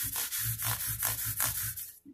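Abrasive-pad fret leveling block rubbed quickly back and forth along an acoustic guitar's frets: a steady run of short sanding strokes that stops just before the end.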